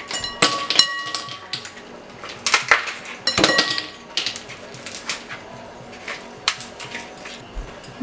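Ice cubes knocked out of a plastic ice-cube tray dropping into a glass bowl: a run of sharp clinks and knocks, with the glass ringing briefly. The clinks come thick at first and thin out after about four seconds.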